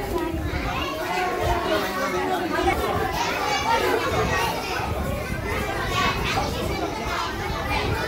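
A crowd of children talking and calling out over one another, many voices overlapping without a break.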